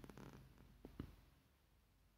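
Near silence: room tone, with a faint short low sound and two soft clicks within the first second.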